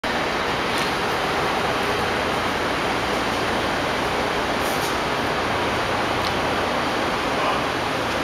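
Steady city street noise: an even, unbroken wash of traffic sound with a few faint clicks.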